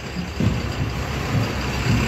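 A vehicle engine running with a steady low rumble.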